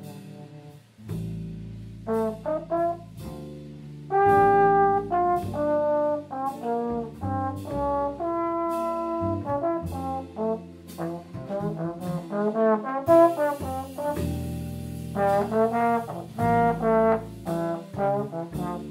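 Trombone playing a jazz solo line of quick phrases mixed with held notes, over upright bass and guitar accompaniment. It starts almost from silence about a second in.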